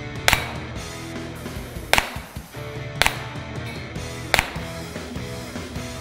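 Four handgun shots at uneven intervals of about one to one and a half seconds, over background music.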